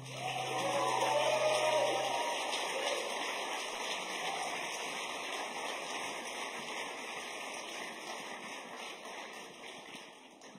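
Audience applauding, swelling in the first second or two and then slowly dying away, with a few voices cheering near the start. A held guitar chord rings out under it for the first two seconds.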